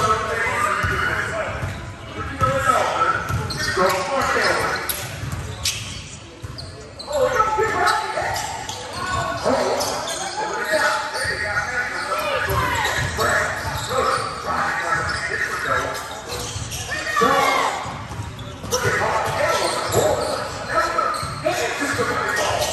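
Basketball bouncing on a hardwood gym floor amid indistinct shouts and chatter from players and onlookers, all echoing in a large gymnasium.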